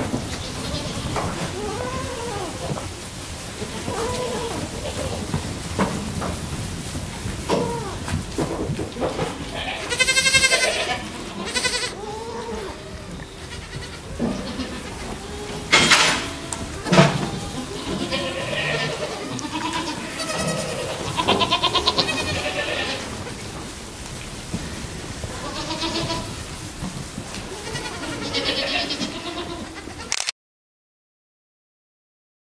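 A herd of goats, adults and kids, bleating in a pen: many separate and overlapping calls of different pitches, with the loudest calls about halfway through.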